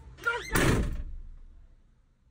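A vehicle's molded plastic door slammed shut: one loud slam about half a second in, fading out over the next second.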